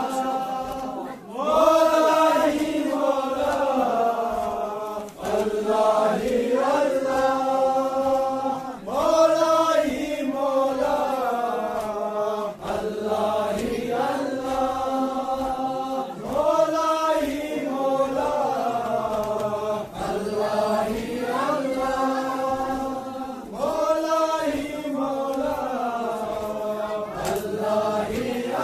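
Male voices chanting a noha, a Shia mourning lament, in long sung phrases that start afresh about every seven to eight seconds.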